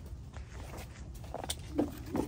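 Quiet handling sounds while picking grapes, over a low rumble, with a single sharp click about one and a half seconds in, such as picking shears snapping shut.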